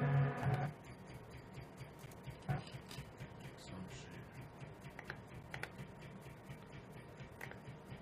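An electronic beat playing back stops abruptly less than a second in. Then come scattered light clicks of computer keyboard typing and clicking, over a faint steady hum.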